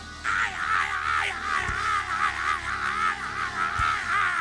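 A male preacher's voice through a microphone in a long, high cry with no words, its pitch wavering up and down, the sung shout of a sermon's climax. Under it a low musical chord is held, with a couple of low thumps.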